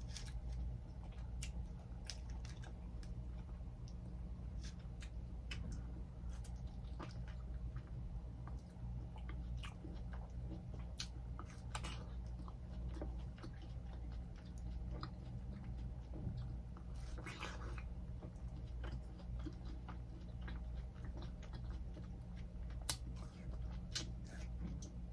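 Biting and chewing of ripe cantaloupe close to the microphone, with many short scattered mouth clicks, over a steady low hum.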